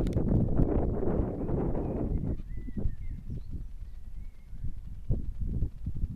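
Wind buffeting the handheld camera's microphone, a dense low rumble that eases after about two seconds. Irregular knocks of footsteps and camera handling follow.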